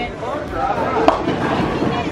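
A bowling ball rolling down a lane and hitting the pins for a strike, with a sharp crash of pins about a second in, over the chatter and rumble of a busy bowling alley.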